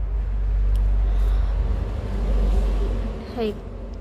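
A loud low rumble with a noisy hiss over it, ending about three seconds in.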